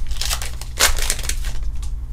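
A foil Pokémon booster pack wrapper being torn open and crinkled by hand, in a few rustling bursts, the loudest a little under a second in.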